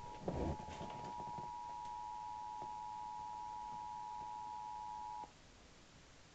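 Emergency Alert System attention signal: two steady tones sounding together, played from a Sony boombox radio and announcing a tornado watch. The tone cuts off suddenly about five seconds in, and there are a few handling bumps in the first second.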